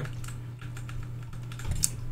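A run of light, irregular clicks and taps of buttons or keys being pressed.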